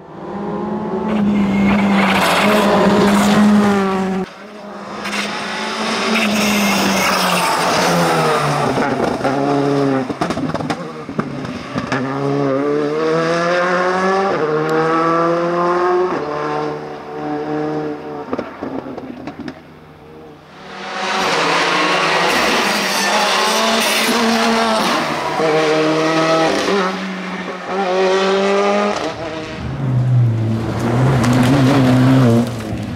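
Rally cars at competition pace: engines revving hard, climbing in pitch through the gears and falling off between pulls. The passes are broken by short lulls about four seconds in and again around twenty seconds in.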